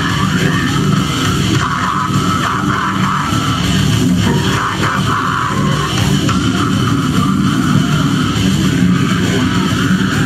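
Brutal death metal band playing live: heavily distorted guitars and drums, loud and dense throughout.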